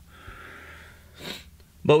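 A man sniffing through his nose: a soft drawn-out breath in, then a short, sharper sniff just past a second in.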